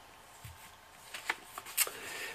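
Faint rustling and a few light taps of sheets of paper being handled on a desk, starting about a second in.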